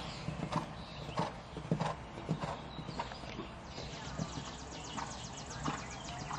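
A horse's hooves cantering on sand arena footing: a dull thud about every 0.6 s, thinning out in the second half as the strides slow.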